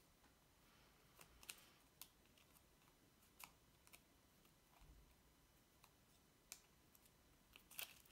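Near silence with a handful of faint, scattered clicks and crinkles: thin paper tabs being folded over and pressed down with the fingertips around the edge of a small cardboard disc.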